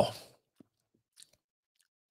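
A drawn-out spoken "wow" trailing off at the start, then near silence with a couple of faint mouth clicks as a sip of whisky is worked over the palate.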